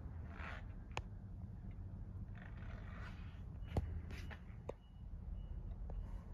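Faint handling noise from a phone being moved around inside a car: a steady low hum with light rustles and a few sharp clicks, about a second in and again near four and five seconds.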